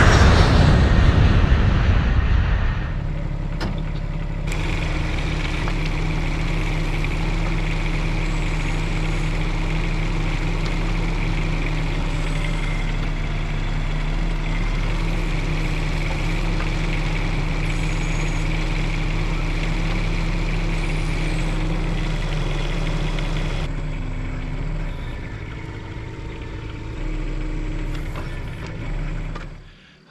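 Bobcat E10 mini excavator's small diesel engine running steadily, with a high hydraulic whine over it as the machine tracks and works its arm. It is loudest and roughest for the first couple of seconds, close to the microphone, and eases back somewhat a few seconds before the end.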